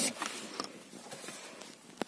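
Faint handling noise: a few soft clicks and light rustling in the first second, then only a faint hiss.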